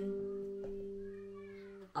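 Acoustic guitar with a capo: a strummed chord rings on and slowly dies away, and a fresh strum comes right at the end.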